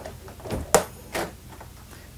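A wooden pocket door being pushed open, with a sharp click about three-quarters of a second in and a couple of softer knocks around it.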